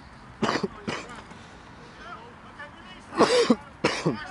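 A person close to the microphone coughing: two short coughs about half a second and a second in, then a louder burst of voice near the end.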